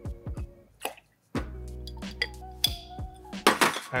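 Background music, with simple syrup poured from a jigger into a metal cocktail shaker tin and dripping in, a few small clinks at the very start. About a second in the sound drops out briefly before the music resumes.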